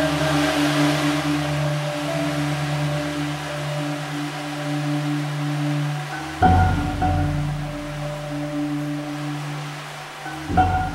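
Percussion ensemble with solo marimba holding soft, sustained chords. About six seconds in, a low struck accent brings in a new chord that is then held.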